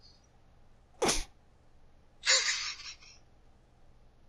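A person sneezing: a short sharp burst about a second in, then a longer breathy sneeze a little after two seconds.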